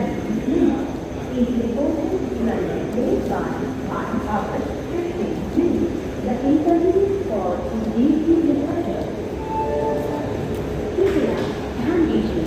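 People's voices talking on a station platform throughout, over a steady low rumble from the passenger train's coaches rolling past.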